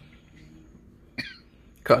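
A single short cough about a second in, over a faint background, then a man starts speaking near the end.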